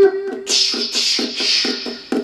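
Percussive tapping on the wooden body of a concert ukulele, strings untouched, in a quick even rhythm of about five taps a second that imitates galloping horse hooves. A steady hiss runs over the taps.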